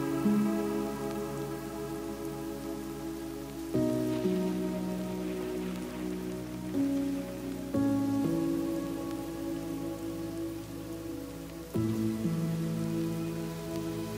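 Background music: slow, sustained chords that change about every four seconds, over a soft even hiss.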